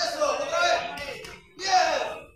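Shouted speech: voices calling out in two bursts, with a short break about a second and a half in.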